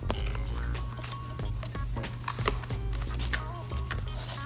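Cardboard box being handled and its flaps opened: scattered light scrapes, taps and rustles of cardboard, over faint background music.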